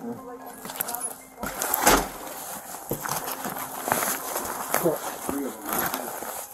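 Police body-worn camera microphone rubbing and knocking against the officer's uniform as he moves, a run of rustles and scrapes with the loudest scrape about two seconds in.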